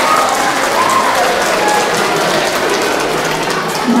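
A crowd of children and adults applauding: steady, dense clapping.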